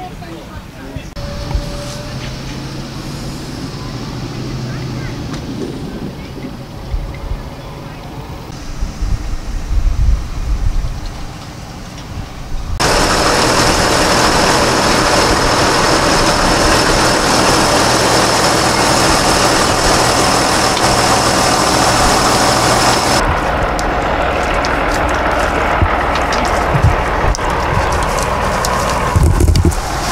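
John Deere tractor's diesel engine running, heard across several abrupt cuts. It is loudest and steadiest through the middle stretch, with a steady high whine over it.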